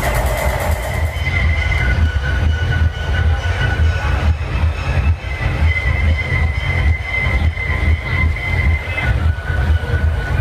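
Techno played loud over a PA system: a heavy bass beat under long held, screeching high tones that switch back and forth between two pitches.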